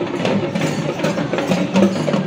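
Drums beaten by a marching procession, a quick, steady run of sharp strokes with music carrying under them.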